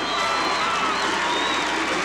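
Rodeo crowd cheering: a steady noise of many voices, with a few higher drawn-out shouts standing out from it.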